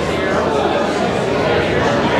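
Crowd chatter: many people talking at once in a large hall, a steady mix of overlapping conversations with no single voice standing out.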